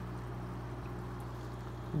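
Aquarium filter running: a steady low hum with a faint watery trickle.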